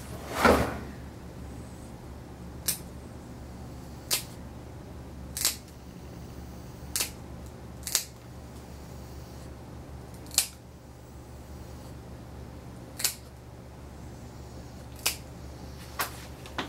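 Dog nail clippers snipping a miniature poodle's nails: a sharp click every second or two as a small sliver is cut off each nail, about eight cuts in all. A louder knock comes just after the start.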